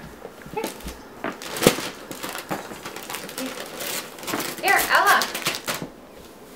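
Wrapping paper and a cardboard gift box being handled and opened, a string of short crinkles and sharp rustles with one louder crackle about a second and a half in. A child's voice babbles briefly near the end.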